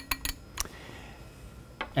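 Light glass clinks and ticks as iodine solution is poured from a small glass vial into a glass separating funnel: a quick run of clicks at the start, then a single clink about half a second in, then only low room noise.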